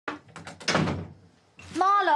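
A fabric holdall being handled: a few light knocks, then a short rustle. A voice starts speaking near the end.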